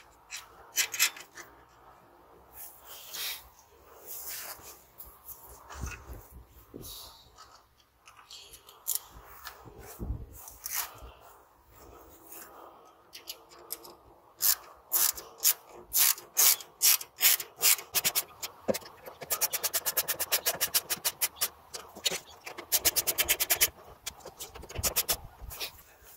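Ratchet wrench clicking in quick, even runs near the end as nuts are run onto a towing mirror's mounting studs inside a car door, after irregular knocks and scrapes of metal on the door frame.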